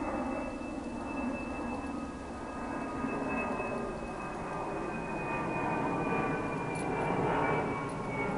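A distant engine's steady drone with several tones whose pitch slowly falls throughout, growing a little louder near the end.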